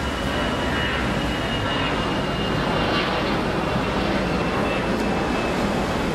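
Steady airport drop-off ambience: a continuous rumble of traffic and engines, with a faint steady high whine running through it.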